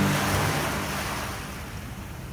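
A rushing, surf-like noise that swells in at once and fades away steadily, as the last of the intro music's chord dies out in the first half second.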